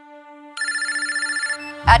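A telephone rings with one electronic trill lasting about a second, over a low, steady music drone that swells in. Near the end a deep boom hits and a woman's voice begins.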